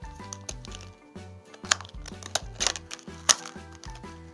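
Background music with a repeating bass line, over a few sharp clicks and crackles of stiff plastic blister packs being handled and pried open.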